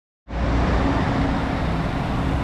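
Steady city street traffic noise, with the low engine sound of a vehicle driving past close by.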